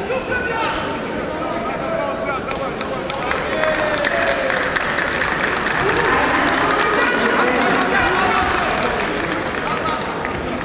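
Arena crowd of a wrestling bout: mixed voices and shouting, growing louder and denser around the middle.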